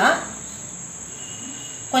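A steady high-pitched whine continues under a soft hiss while the speaking pauses.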